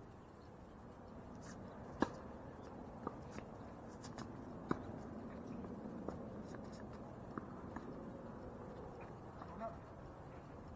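Tennis ball in a doubles rally on a hard court: sharp pops of racket strikes and ball bounces every second or so, unevenly spaced, the loudest about two seconds in.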